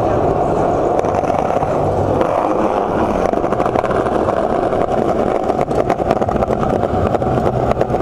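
Small hard wheels rolling fast over pavement: a steady loud rumble, with many quick clicks over joints and rough spots from about three seconds in.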